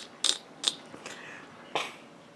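A few short sharp clicks and light taps, about four in two seconds with the last the strongest, from small hard makeup items being picked up and handled.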